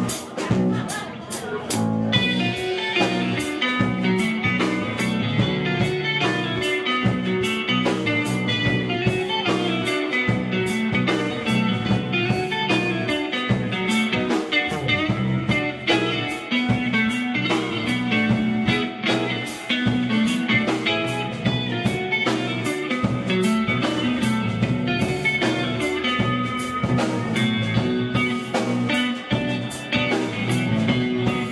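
A live rock band playing an instrumental passage on electric guitar, electric bass and drum kit. The drums sound alone at first, and the guitar comes in about two seconds in, after which the band plays on with a steady beat.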